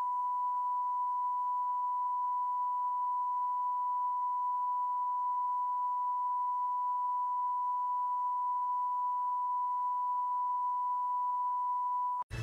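A steady 1,000-cycle broadcast test tone, the tone a TV station airs with its test card once it has signed off. It is one unbroken, unchanging pitch with faint overtones.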